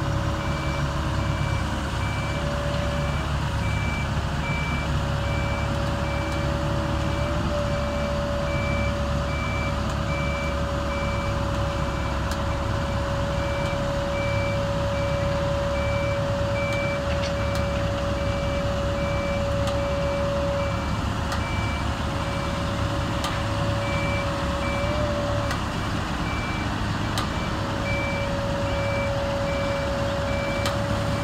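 Link-Belt crawler crane's diesel engine running steadily under load, with a whine that shifts pitch a few times as the crane swings a precast concrete bridge girder. Over it a motion warning alarm beeps regularly, a high, even beep repeating throughout.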